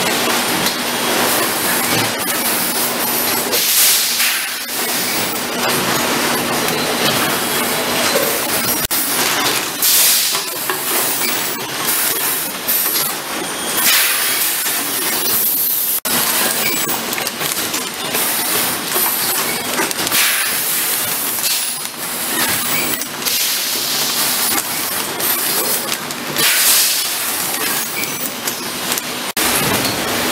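Bottled-water filling line running: a continuous hiss of air and water with clattering of plastic bottles and frequent machine knocks, over a faint steady hum at times.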